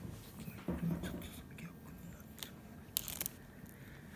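Soft clicks and rustles of something small being handled at a table, with a brief low murmur about a second in.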